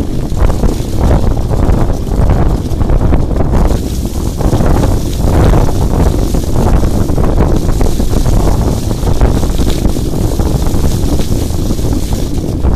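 Loud wind buffeting the microphone of a camera moving along with a bike, a dense rumble that surges and eases every second or so.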